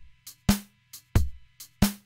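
Slow programmed drum-machine beat from a software drum kit, three sharp drum hits about two-thirds of a second apart. It is a shuffle groove built by knocking out the middle note of each triplet.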